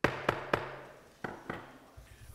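Gavel rapping on the bench five times, three quick raps, a short pause, then two more, calling the meeting to order.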